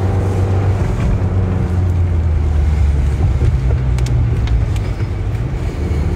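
Steady low engine and road drone heard inside the cabin of a moving car.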